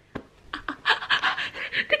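A woman laughing hard, almost without voice. After a near-quiet start, a quick run of short breathy gasps comes, about eight a second.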